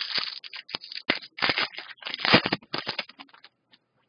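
Trading cards being flipped and slid through the hands, a quick run of papery scrapes and snaps that dies away about three and a half seconds in.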